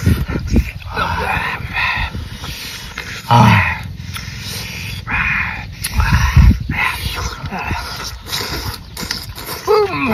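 Men's wordless eating reactions to spicy raw shrimp: exclamations and sharp, breathy puffs, with a low falling grunt about three seconds in and a falling 'ooh' at the end.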